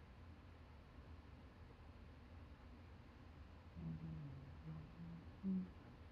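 Near silence: low, steady room hum. About four seconds in comes a faint low voice sound that lasts under two seconds.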